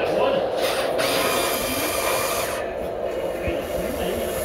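RC scale excavator working its arm, a mechanical whir swelling for about two seconds as the boom and bucket move, over a steady hum.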